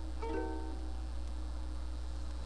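Ukulele with a couple of notes plucked about a quarter second in, then ringing out and fading, over a steady low hum.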